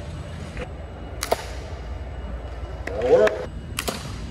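Two sharp gunshot reports, about a second in and again near the end, each followed by a short ring of reverberation from the large hall.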